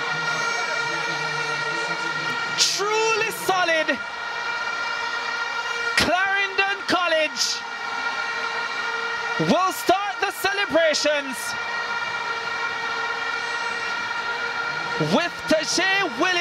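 Stadium crowd noise with horns blowing in the stands: several steady held notes throughout, and short sliding notes that rise and fall every few seconds.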